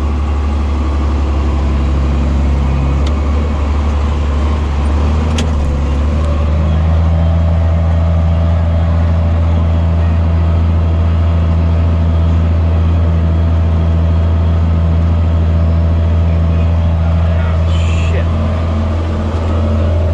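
Tractor diesel engine running steadily, heard from inside the cab as a low drone; about six seconds in its pitch steps up slightly and then holds.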